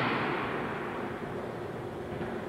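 A pause in a man's halting speech, filled only by an even background hiss that slowly fades.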